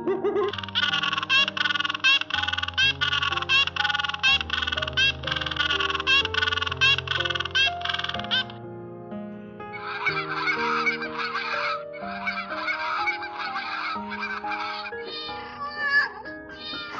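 Background music with soft held notes, laid over bird calls: a fast run of repeated calls, about two or three a second, for the first half, then after a short pause a denser chattering.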